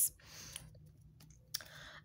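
A woman's mouth clicks and soft breaths in a pause between phrases: a sharp click at the start, a short breath about half a second in, a few faint ticks, then another click and an in-breath in the second half.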